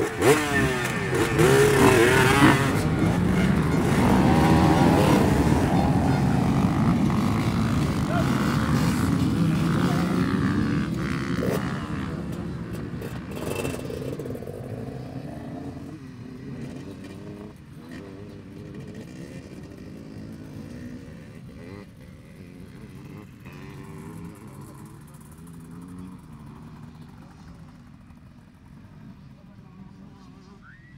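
A pack of enduro motorcycles starts up together all at once and revs hard as the bikes pull away, loudest over the first dozen seconds. The sound then fades as the pack rides off, with single bikes still revving up and down nearby.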